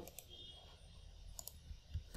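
A few faint clicks from a computer's mouse or keys over quiet room tone.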